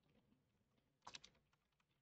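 Faint keystrokes on a computer keyboard: a quick run of three or four taps about a second in, with a few fainter ticks around it.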